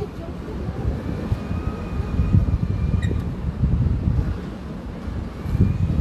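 Wind buffeting the phone's microphone: an uneven low rumble that rises and falls in gusts.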